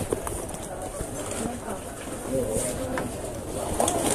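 Indistinct voices of people talking nearby, with a few short clicks and knocks.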